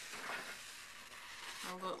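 Rotary cutter blade rolling along an acrylic ruler, slicing through cotton quilt fabric on a cutting mat: a soft, even hiss that fades about a second and a half in.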